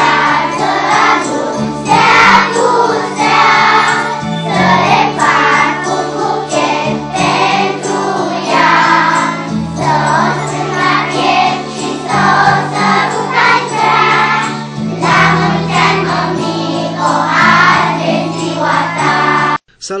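A children's choir singing a song in unison over steady instrumental accompaniment. It cuts off abruptly near the end.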